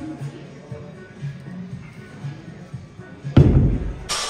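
Pair of heavy dumbbells dropped onto the gym floor at the end of a set: one loud thud about three and a half seconds in, ringing on briefly, over background music.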